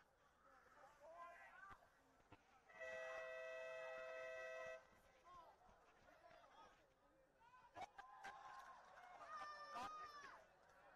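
A two-tone horn sounds steadily for about two seconds, over distant shouting from the field and sidelines, with a couple of sharp knocks near the end.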